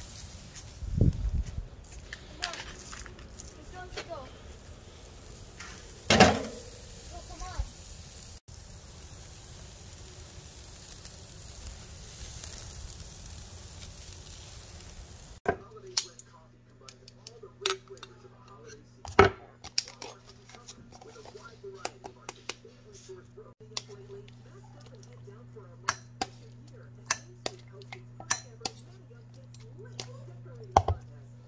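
A burger patty sizzling on a charcoal grill grate: a steady hiss broken by a few loud knocks. After an abrupt change about halfway through, a jar and a plastic tub are handled, with many short clicks and clinks of glass, plastic and a spoon over a steady low hum.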